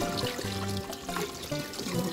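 Kitchen tap running, with water trickling into and splashing off a plastic cup as it is rinsed in a metal sink, under background music with steady held notes.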